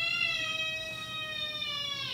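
A siren sounding one long held tone that sags slightly in pitch and then drops away sharply at the end, most likely a police-siren sound effect.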